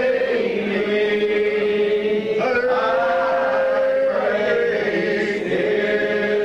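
Unaccompanied men's voices singing a lined hymn together in the slow old Primitive Baptist style. Each syllable is drawn out into a long held note that slides up or down into the next, changing about every two seconds.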